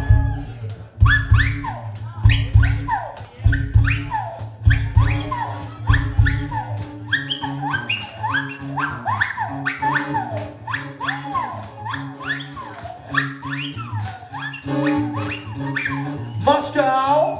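A live funk band playing an instrumental groove: a steady bass line and drums under repeated swooping high notes, about two a second. The heavy low bass-drum hits drop out about six seconds in, leaving the lighter groove.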